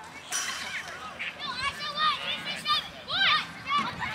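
Several young children shouting and cheering at once in high voices, their calls rising and falling, with a louder shout about half a second in.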